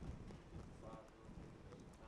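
Near silence with soft, uneven taps of a stylus on a tablet screen.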